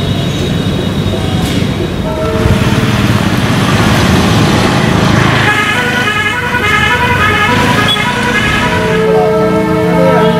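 Roadside traffic noise with a low rumble and vehicle horns. One horn tone is held through the first couple of seconds, and from about halfway on there is a run of horn notes that keeps changing pitch.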